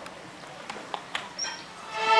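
A pause between pieces: low audience murmur with a few scattered light knocks and clicks, and one brief high squeak about one and a half seconds in.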